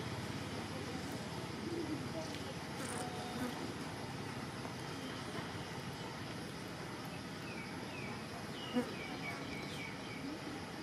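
Steady background of insects buzzing. A few short, falling chirps come in the last few seconds, and there is one brief click shortly before the end.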